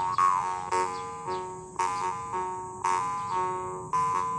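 Copper jaw harp plucked about once a second, each twang ringing over a steady drone while shifting overtones carry a slow improvised melody, some of them sliding in pitch.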